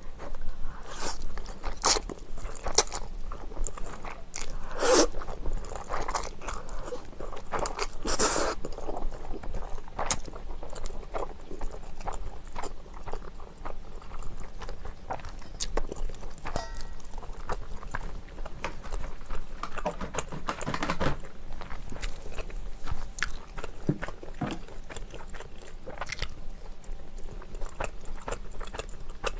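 Close-miked chewing and biting as a person eats Carbo Buldak stir-fried instant noodles and cheese-filled dumplings, with many short, sharp mouth clicks and a few longer noisy stretches.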